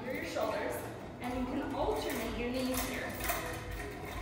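A woman's voice, with light metallic clinks from the TRX suspension straps' buckles as the straps swing during knee drives.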